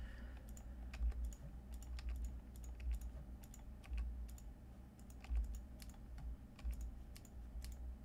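Computer keyboard keys and mouse buttons clicking at irregular intervals, light scattered taps over a low steady hum.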